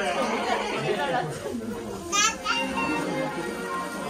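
Chatter of an audience of parents and young children in a hall, with one brief, high, wavering squeal from a child about halfway through.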